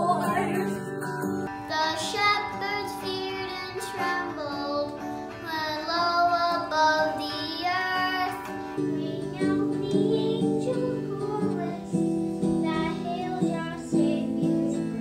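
Children singing a song with acoustic guitar accompaniment.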